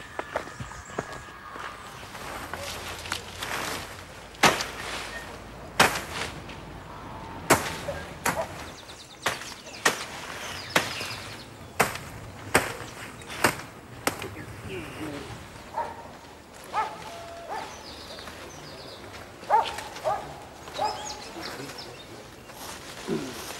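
Cutlass (machete) chopping through weeds and plant stems: a long run of sharp strikes, irregular but about one a second.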